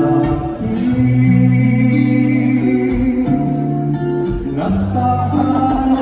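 A man singing a slow ballad with guitar accompaniment, holding long notes.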